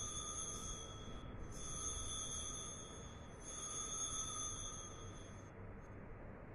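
Altar bell rung three times, each ring a clear, sustained tone lasting nearly two seconds, marking the elevation of the consecrated chalice.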